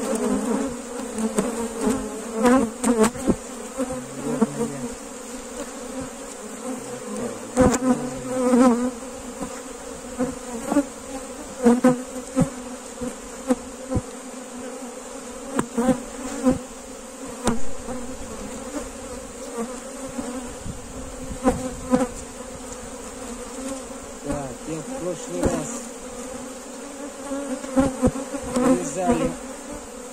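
Honeybees buzzing in a dense, steady hum around an open hive, with single bees wavering in pitch as they fly close past. Frequent short clicks and knocks come from the wooden hive frames being handled and moved.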